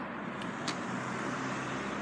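A motor vehicle running steadily, its low engine hum growing stronger about halfway through, over a background of road-traffic noise, with two faint clicks early on.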